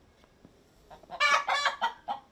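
A chicken calling: a loud, high-pitched call in three quick parts, starting a little over a second in.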